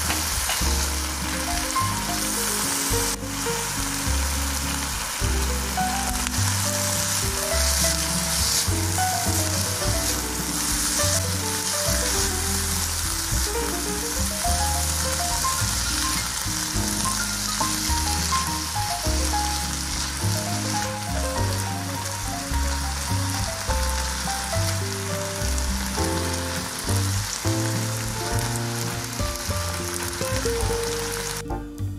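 Diced chicken breast, garlic and onion sizzling steadily in olive oil in a nonstick frying pan while being stirred, with background music over it.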